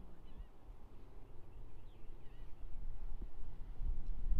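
A few faint bird calls over a low rumble that grows louder near the end.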